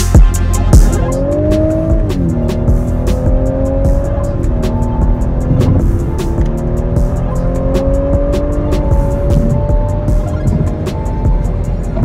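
A car engine accelerating through the gears: its pitch climbs, drops at a gear change about two seconds in and again near the middle, then climbs slowly for several seconds. Background music with a steady beat plays throughout.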